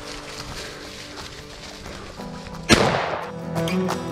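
A single shotgun shot a little under three seconds in, sharp and loud with a short fading tail, over background music.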